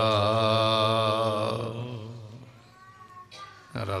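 A voice singing a line of Gurbani kirtan, holding the last note with a wavering pitch for about two seconds before it fades away. The next line starts right at the end. A steady low drone runs underneath.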